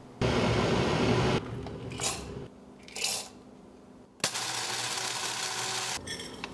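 Kitchen handling sounds of coffee being made in a glass French press: a loud rush of noise lasting about a second, two short scrapes, then a click and a steady hiss from about four seconds in.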